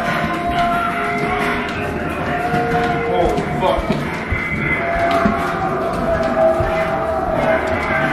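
Loud, sustained moan-like droning tones from a haunted-house attraction's sound effects, held for a few seconds at a time and then shifting in pitch.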